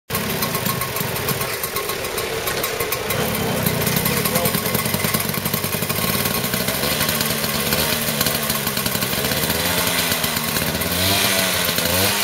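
Small two-stroke moped engine running with a fast, steady firing rhythm that wavers up and down in pitch in the later seconds.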